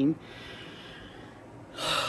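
A woman's faint breathing, then a short breathy sigh near the end.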